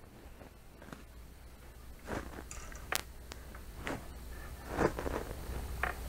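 Faint rustling and scraping of nylon string being handled and laid out along a tape measure on a workbench, with one sharp click about three seconds in.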